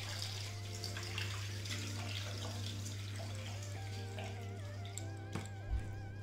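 Water running from a bathroom tap over hands being washed, with soft background music and a steady low hum underneath.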